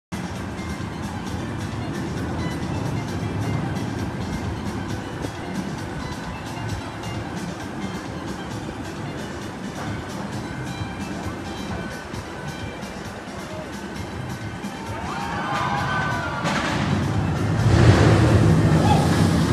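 Theme-park ambience: background music and distant voices over a steady low rumble. A rushing noise swells louder in the last couple of seconds.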